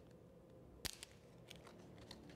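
Near silence, broken by a sharp click a little under a second in and a fainter click just after: small handling sounds of the communion host and chalice at the altar.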